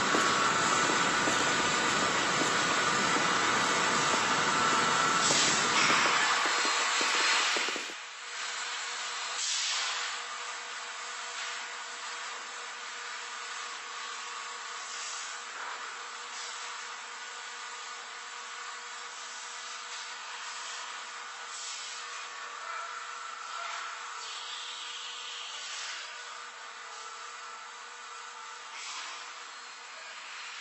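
Sound-design noise in VHS found-footage style: a loud rushing static for about eight seconds that drops off sharply, leaving a quieter steady tape-like hiss with a faint electrical hum and a few brief soft swishes.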